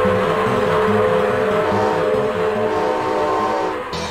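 Intro jingle music with sustained melodic notes over a steady, repeating bass rhythm, with a short swish near the end.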